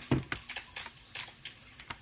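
A quick, irregular series of light clicks and taps close to the microphone, with a heavier thump just after the start.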